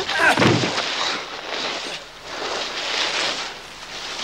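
Two men in a fistfight: a strained grunt at the start, then rough scuffling and struggling noise.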